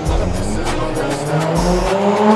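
Drift car's engine held at high revs, its note climbing steadily in pitch through the second half, with tyres screeching as the car slides. Background music plays under it.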